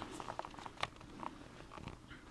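Faint scattered clicks and light taps over quiet room tone as the video camera is handled and repositioned.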